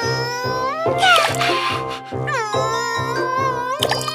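A high-pitched cartoon voice straining in long, wavering held sounds, over background music with a steady beat.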